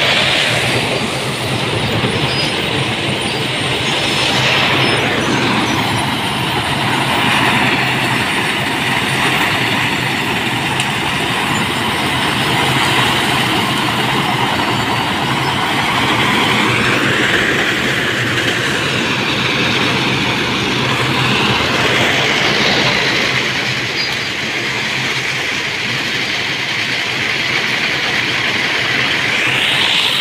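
Sugar mill cane carrier, a steel slat conveyor loaded with sugarcane, running steadily and loudly, with a few gliding metallic squeals over the continuous machinery noise.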